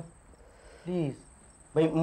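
Crickets chirping steadily as night-time background ambience, a thin high continuous trill. About a second in there is one short voiced sound from a person, and speech starts near the end.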